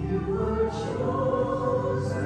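A church choir singing a hymn in long held notes.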